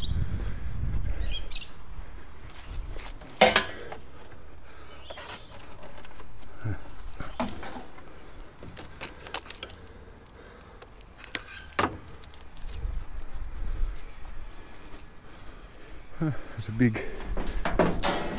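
Hands handling scrap items and hand tools in a pile of junk: scattered sharp clicks and knocks, the loudest about three and a half seconds in and another about twelve seconds in, over a low rumble near the start.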